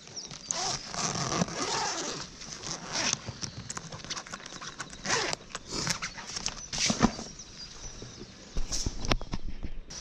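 Zipper on a soft-sided cooler bag being pulled open in several short, irregular rasps, with the bag's fabric rustling as the lid is handled.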